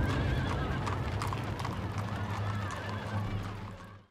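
Horses' hooves clip-clopping and a horse whinnying over a low rumble, fading out near the end.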